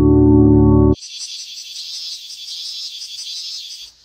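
A loud sustained ambient music chord, organ-like, cuts off abruptly about a second in. A high, pulsing insect chorus follows, quieter, and stops just before the end.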